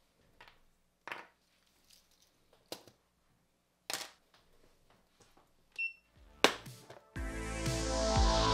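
Sparse light clicks and knocks of hard 3D-printed plastic parts being handled and set down on a cutting mat, about five spread over several seconds, with a short high ping about three-quarters through. A louder clack comes just before background music starts near the end.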